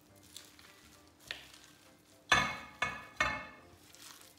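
Silicone spatula scraping a thick nut-and-seed mixture out of a glass bowl into a stoneware baking dish: a couple of faint clicks, then three loud scrapes in quick succession in the second half.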